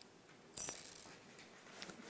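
Small sterling silver tube beads clinking as they are handled: a short metallic jingle about half a second in, then a few faint ticks.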